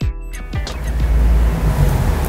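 A loud rushing noise with a deep rumble, swelling over the first second and then holding steady, with no musical notes in it.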